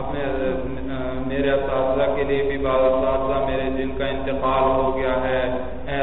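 A man's voice chanting in a melodic recitation, holding long notes that waver and glide in pitch, with short breaks between phrases.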